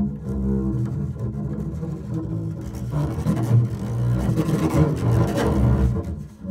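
Solo double bass bowed in free improvisation: low sustained notes with rich overtones. About halfway through the playing grows louder, denser and scratchier.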